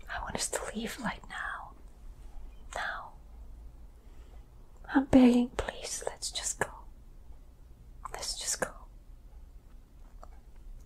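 A woman whispering in four short, breathy bursts, her voice briefly sounding aloud about five seconds in, the loudest moment.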